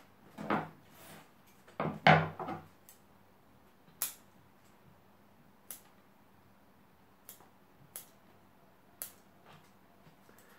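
Bonsai scissors snipping side shoots off juniper cuttings: a handful of sharp, short clicks spaced a second or so apart, after two louder bouts of handling noise in the first few seconds.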